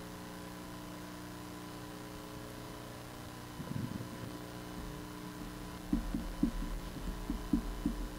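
Steady electrical hum from the audio system, with faint, muffled low thuds coming irregularly from about six seconds in.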